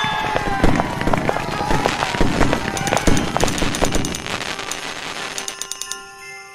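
Fireworks crackling and popping in a dense rapid run, with voices and music underneath; the crackle thins out toward the end.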